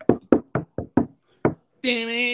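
A quick, uneven run of about seven sharp knocks within a second and a half. Near the end a man's voice comes in on a drawn-out, sung note.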